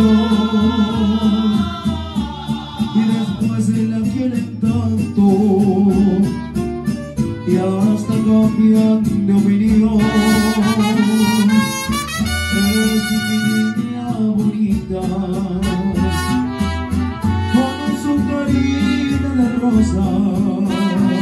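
Mariachi band playing live: trumpet and saxophone carry the melody over guitars and a steady bass line, the brass at its brightest about ten seconds in.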